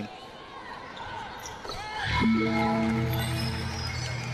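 Basketball arena sound during a free throw: low crowd noise, then about two seconds in a held low musical note with overtones starts and carries on steadily.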